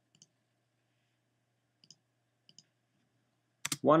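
Three faint, short double clicks of a computer mouse, the first just after the start and two more close together around two seconds in, over near silence; a man's voice starts speaking near the end.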